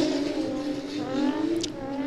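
Drift car engine revving on track, its pitch rising and wavering about halfway through, over a steady low hum.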